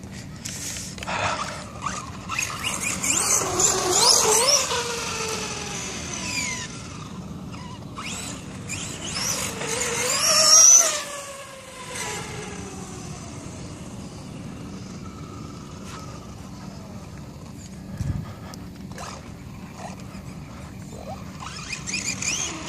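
Electric RC monster truck's brushless motor whining, its pitch rising and falling as it speeds up and slows down, with tyre noise on asphalt. There are two loud runs about three and ten seconds in, the second the loudest, then quieter running.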